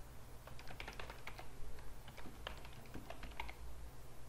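Computer keyboard typing in two quick bursts of keystrokes, the first about half a second in and the second from a little after two seconds: a short terminal command (sudo su), then a password.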